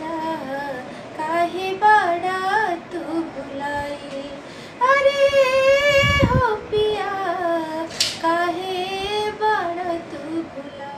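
A woman singing a Bhojpuri song unaccompanied in practice, with wavering, ornamented notes and one long held note in the middle, plus a single sharp click near the end.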